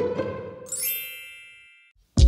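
Intro sting sound effect: a bright chime dings about two-thirds of a second in and rings on, fading away to nothing over about a second.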